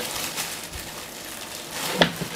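Rustling and scraping as an animal roots with its head inside a wooden crate, with a steady noisy rustle throughout that grows a little louder near the end.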